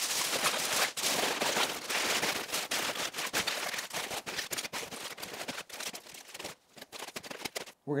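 Aluminium foil crinkling and crackling as it is folded and crimped up around a rack of beef ribs into a foil boat. The crackle is dense for about six and a half seconds, then dwindles to a few scattered crackles.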